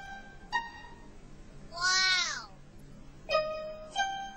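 Light background music of plucked notes, with a single cat's meow about two seconds in, rising and then falling in pitch and louder than the music.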